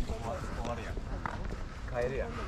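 Indistinct voices of people talking nearby, over a steady low rumble on the microphone.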